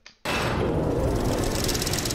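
Sound-effect rush from an NFL Top 100 player-reveal graphic: a dense swell of noise with a low rumble that starts suddenly just after the start and holds steady.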